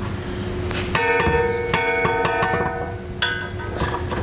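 A steel trailer hitch clanking as it is lifted into position, with ringing metallic tones that sound on for about two seconds after a knock.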